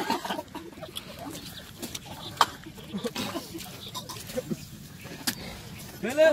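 Quiet, scattered low voices and murmurs from a group of men outdoors, with two sharp clicks, one about midway and one near the end.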